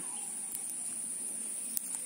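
Steady high-pitched insect chorus, like crickets, with a couple of faint clicks.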